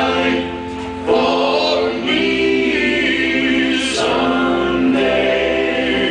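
Male vocalist singing a slow gospel song live into a microphone, holding long notes over an accompaniment with choir-like backing voices; the level dips briefly just before a second in, then the singing comes back in full.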